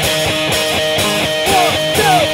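Rock song in a vocal-free passage: a guitar plays a repeated line of notes over a thinned-out backing, bending notes in the second half, and the full band with bass comes back in right at the end.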